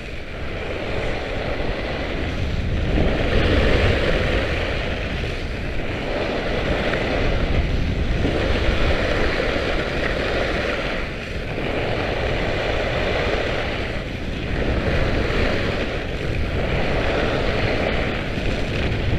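Wind rushing over the microphone of a camera moving fast downhill, over a steady scraping hiss of skis carving on groomed snow; the noise swells and eases every few seconds.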